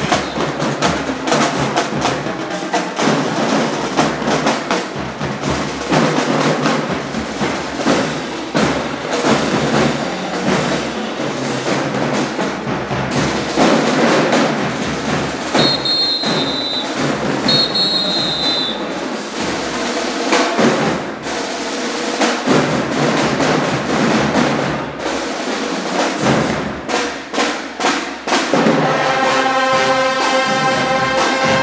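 Marching band drumline of snare, tenor and bass drums playing a fast marching cadence. Two short whistle blasts sound about halfway through, and the brass section comes in near the end.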